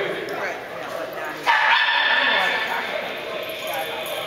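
A dog gives a loud, high-pitched yelp about a second and a half in, held for about a second, over people talking in the hall.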